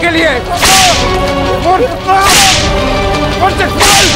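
Three swishing lashes of a whip, about a second and a half apart, over background music.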